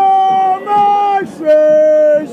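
Football supporters chanting close by: a loud sung chant of long held notes with short breaks between them, stepping down in pitch.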